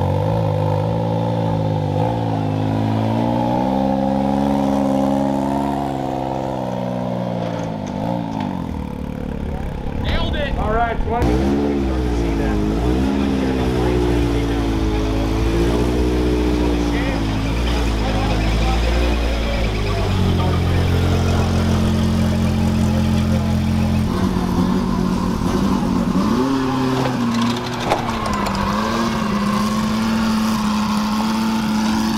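Off-road race vehicle engines idling and revving as the cars move past, with a person talking loudly over them for much of the time.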